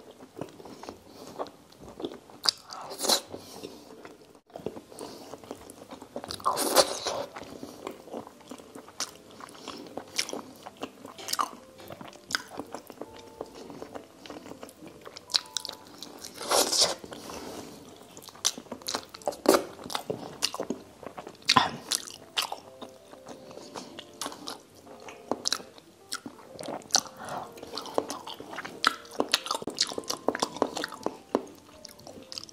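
Close-miked eating sounds: chewing and biting of braised pork and rice eaten by hand, in irregular moist clicks, with louder mouthfuls about 7 and 17 seconds in.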